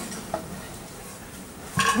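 Low background clatter of dishes and cutlery from people eating, with one small clink about a third of a second in. A woman starts speaking near the end.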